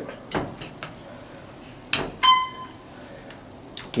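Clicks from the car button panel of an OTIS Series 1 hydraulic elevator as its buttons are pressed, with a single short electronic beep about two seconds in.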